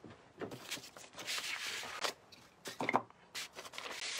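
A 16 x 24 in steel carpenter's square being set down and slid into place on a sheet of decoupage paper: a few light knocks, with a rustling scrape about a second in and another knock near three seconds.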